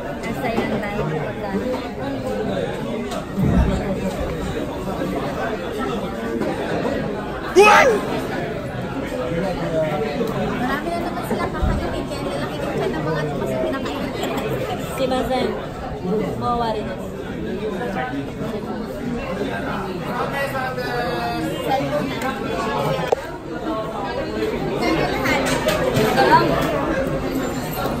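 People talking and chattering at a restaurant table, with a sharp, brief sound about eight seconds in.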